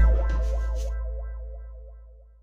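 Music sting added in the edit: a deep bass boom with a distorted electric guitar chord, loudest at the start and fading away over about two seconds.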